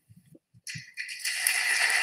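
Audience applause rising about a second in after a brief hush, and carrying on steadily.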